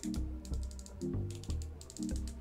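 The brake dial on the side plate of a Piscifun Spark Pro baitcasting reel, turned by hand, giving several quick runs of small detent clicks. Background music plays underneath.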